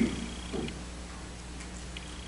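Steady low electrical hum of the sound system in a quiet room, with a couple of faint ticks, one about half a second in and one near the end.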